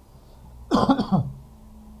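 A man coughing once to clear his throat, a short burst about three quarters of a second in.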